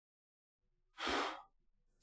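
About a second in, one short breath-like puff of air lasting about half a second: someone blowing fine dirt off a sheet of paper onto the laser scanner.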